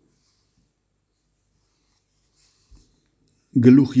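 Near silence in a pause of the reading, then a man's voice resumes reading aloud in Armenian about half a second before the end.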